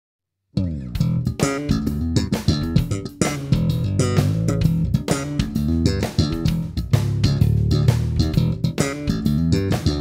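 Human Base Roxy B5 five-string electric bass played slap style, with its preamp active and its single pickup's two coils wired in parallel: a busy run of slapped and popped notes with sharp percussive attacks, starting about half a second in.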